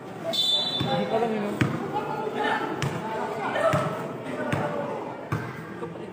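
A basketball being dribbled on a concrete court, bouncing about once a second, with voices of onlookers around it.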